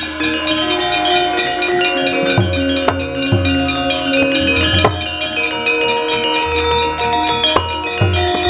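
Javanese gamelan ensemble playing a fast, driving piece: struck bronze metallophones keep a quick steady pulse over held gong-like tones, with hand-drum strokes landing every second or so and a few sharp metallic clashes.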